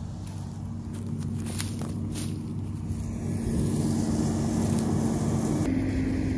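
Tractor engine and mower running steadily, heard from out in the field. The drone grows louder about halfway through, and its pitch steps up near the end.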